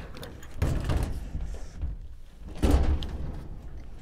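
Knocking and rubbing against a steel cabinet as something is put inside it, with two heavier thuds, one about half a second in and one near three seconds; the sound is loud and rough, and described as sounding terrible.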